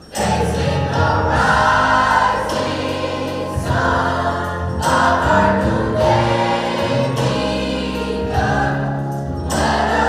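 Gospel choir music: a group of voices singing sustained phrases over a low bass line. It starts suddenly and carries on at full volume.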